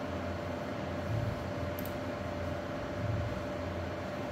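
Steady machine hum with one constant mid-pitched tone over a low drone and a hiss-like background, swelling slightly about a second in and again about three seconds in.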